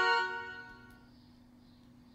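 The tail of the Duolingo lesson-complete jingle, a bright chime chord that rings out and fades away within about the first second.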